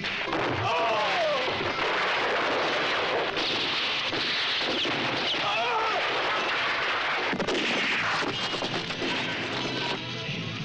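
Film gunfight sound: a dense, continuous barrage of gunfire and explosions, with men yelling over it twice.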